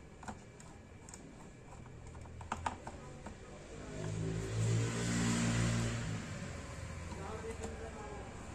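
A few small sharp clicks of a screwdriver and metal screws against the projector's parts, two of them close together. Then a louder low hum rises and fades over about two seconds.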